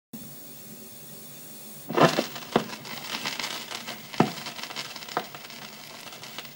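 Faint steady hiss, then about two seconds in a turntable stylus drops onto a spinning 7-inch vinyl single with a sudden crackle. It runs on as lead-in groove surface noise: dense crackle with a few sharp pops.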